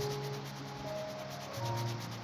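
Quick, rhythmic scratching and rubbing of an ear-cleaning tool against the skin of the ear canal, picked up close by the ear camera, several strokes a second, over soft background music.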